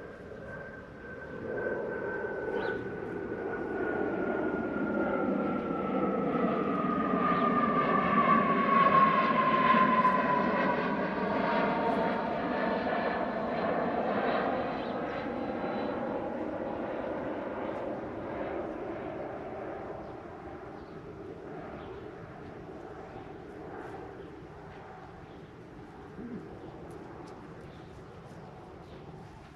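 An airplane passing over, growing louder to a peak about ten seconds in and then slowly fading, its engine note dropping in pitch as it goes by.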